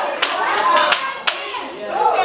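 Church congregation clapping by hand, a series of sharp claps, with voices calling out over them.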